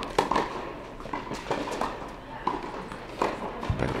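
Tennis rally on an indoor court: sharp racket-on-ball strikes and ball bounces, about one a second, echoing in the hall.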